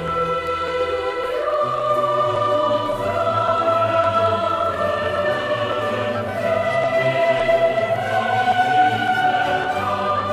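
Girls' choir singing long, sustained notes that move slowly from pitch to pitch, with an orchestra accompanying underneath.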